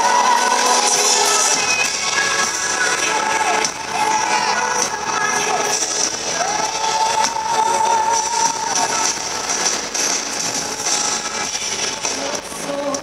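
Live amplified Christian pop music played by a band on stage, with long held melody notes.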